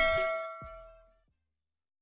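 The last bell-like chord of the closing music ringing out and fading away within about a second.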